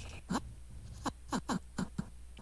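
Short, squeaky chirps, each gliding quickly down in pitch, about five in two seconds at an uneven pace. They are snippets of the animated shot's dialogue audio as its timeline is scrubbed through.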